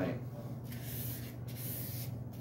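Oiled 1000-grit sandpaper rubbed along a steel sword blade, two hissing strokes, the second near the end.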